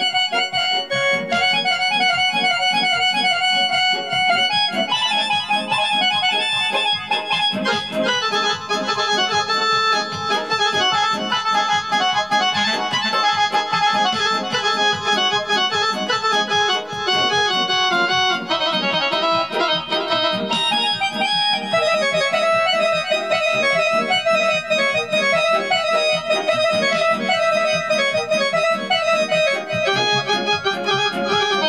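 Casio electronic keyboard played in an accordion-like voice: a busy, continuous melody with chords, without a pause.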